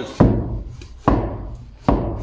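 A length of sawn timber knocking against timber roof trusses: three sharp wooden knocks, a little under a second apart.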